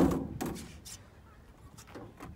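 A loud knock against the play structure's perforated metal steps, fading quickly, followed by a few lighter knocks and clatters about half a second apart.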